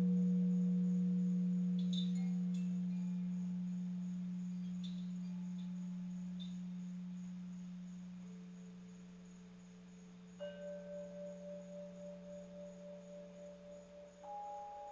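A deep, pure singing-bowl tone, struck just before, rings on and slowly fades, with a few light chime tinkles over it. Another tone comes in about eight seconds in, and about ten seconds in a higher tone joins with a slow, pulsing waver.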